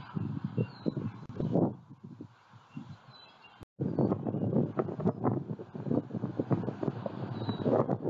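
Wind buffeting an outdoor camera microphone in irregular gusts, with a brief dropout a little under four seconds in where the recording cuts. A few faint, short, high chirps sit above the wind.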